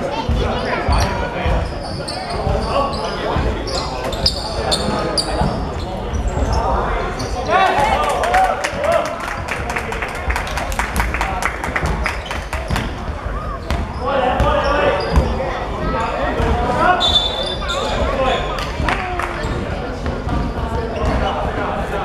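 Basketball bouncing on a hardwood sports-hall floor amid players' voices and shouts, all echoing in a large indoor hall.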